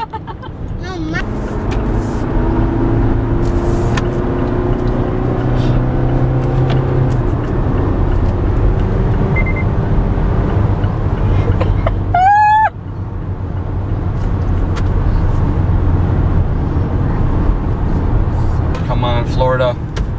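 Steady road and engine noise inside the cabin of a Mazda CX-5 driving at highway speed. About twelve seconds in, a brief high-pitched tone lasting about half a second is the loudest sound.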